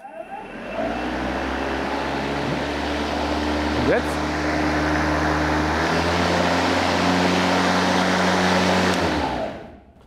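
Makita four-battery cordless lawn mower's electric blade motor starting up and running with a steady hum. Its speed shifts once about six seconds in as silent mode is switched, the mode in which the motor does not spin up as high and runs quieter. It winds down and stops near the end.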